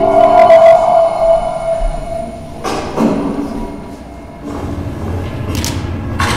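Soundtrack of a projected video played over a hall's loudspeakers: a held musical note for the first couple of seconds, then several sharp thuds or whooshes around three seconds in and again near the end.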